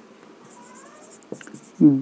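Marker pen writing on a whiteboard: faint, light scratching strokes.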